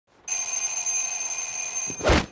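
An alarm clock's bell ringing continuously. It starts a moment in, after silence, and cuts off suddenly near the end.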